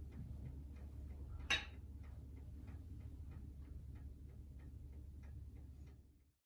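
Mechanical mantel clock ticking steadily, about four ticks a second, over a low room hum, with one louder click about one and a half seconds in.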